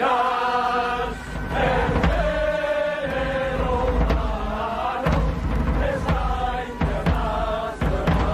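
A crowd of men and women singing a song together in unison, with long held notes in phrases separated by short breaks.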